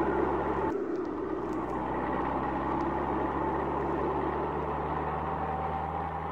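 Cartoon sound effect of a car driving: a steady low engine hum under an even rushing noise, with a slight change in tone about a second in.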